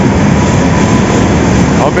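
Sugar-mill machinery, with a bank of MAUSA batch sugar centrifuges in front, running with a loud, steady industrial din and a faint steady high whine.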